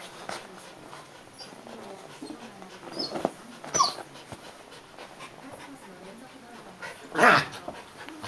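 Two dogs, a schipperke and a mixed-breed, play-fighting with low growling vocalisations, a short high whine about four seconds in, and a loud, sharp vocal outburst near the end.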